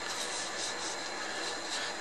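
Steady background hiss of the room, with a faint high-pitched whine and no distinct events.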